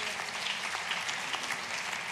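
Church congregation applauding, a steady spell of clapping that fades as the preacher resumes.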